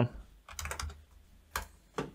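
Computer keyboard keystrokes entering a value: a quick run of taps about half a second in, then single taps near the end.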